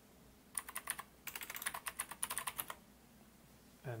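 Typing on a computer keyboard: a quick run of keystrokes starting about half a second in, lasting a little over two seconds, then stopping.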